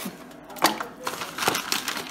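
Wooden spoon knocking against a metal cooking pot, two sharp clicks about two-thirds of a second and a second and a half in, as piloncillo is added to the water.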